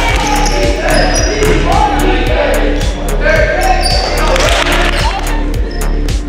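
Game sounds of a youth basketball game in a gym: a ball bouncing and players' sneakers squeaking on the hardwood, amid voices, with music playing steadily underneath.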